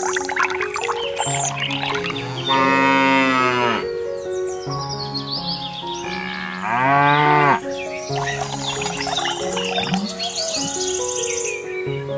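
Two long cow moos, the loudest sounds here, over light background music: the first about two and a half seconds in, the second about six and a half seconds in and slightly shorter.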